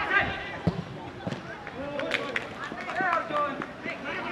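Youth football players calling out to each other across the pitch during open play, with a few sharp knocks among the calls.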